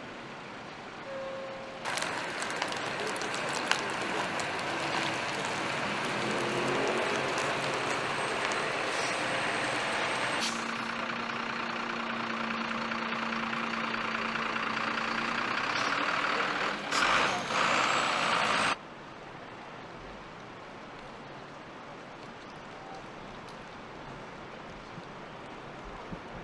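A large vehicle running close by amid street noise, a dense steady roar with a low hum, which cuts off abruptly a few seconds past the middle and leaves quieter street background.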